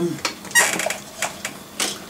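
Small metal diecast model cars clattering together in a clear plastic tub as it is picked up and moved, in short rattling bursts.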